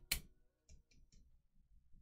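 A few faint clicks as a heavy metal cap is pulled off a glass perfume bottle: one sharper click at the start, then three or four softer ticks around the middle.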